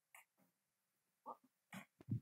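Near silence broken by a few short breaths and mouth sounds picked up close on a handheld microphone, three brief puffs spread across the two seconds.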